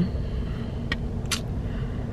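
Steady low rumble of a car, heard from inside the cabin, with two short clicks about a second in.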